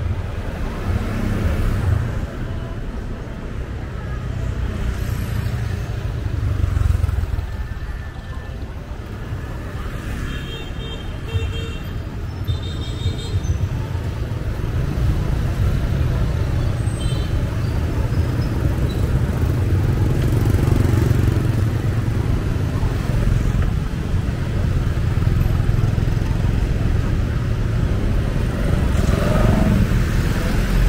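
Street traffic of passing motorbikes, tuk-tuks and cars: a steady low engine rumble that grows a little heavier in the second half. A few brief high-pitched tones sound about ten to thirteen seconds in.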